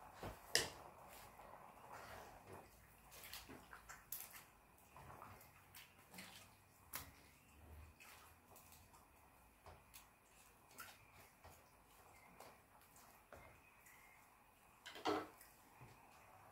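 Faint, irregular ticks and pops from a pot of fish and vegetables simmering on a gas stove.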